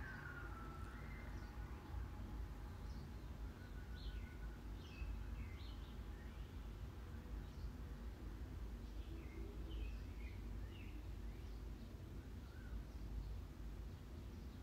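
Faint, scattered high chirps of small birds, a few at a time, over a low steady hum.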